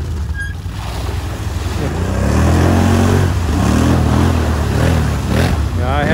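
Quad ATV engine revving as it rides past through shallow water, louder from about two seconds in, with water splashing and spraying from the wheels.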